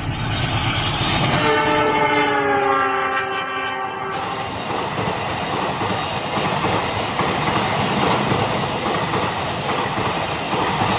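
Diesel locomotive horn sounding one long multi-tone blast of about three seconds, its pitch dropping slightly before it cuts off sharply. This is the Indonesian 'semboyan 35' horn signal of a passing train. Then comes the steady roar and clickety-clack of passenger coaches running past at speed.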